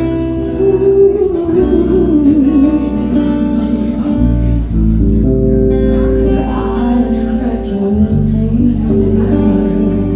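Live band music: electric guitar and bass guitar playing long held chords under a woman singing into a microphone.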